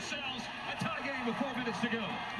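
Faint NBA game broadcast audio: a commentator talking quietly over steady arena crowd noise.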